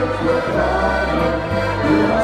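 Austrian folk-pop band playing live: accordion, electric guitar and electric bass with voices singing over them.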